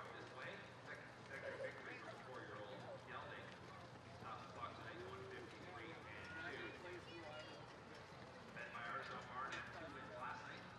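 Faint voices of people talking, picked up at a distance over a steady low hum.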